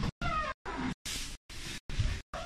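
A house cat meowing, one call falling in pitch. The sound breaks up into short silent gaps about twice a second.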